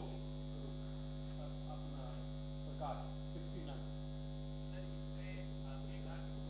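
Steady electrical mains hum on the microphone feed, with a faint voice off-microphone briefly about three seconds in.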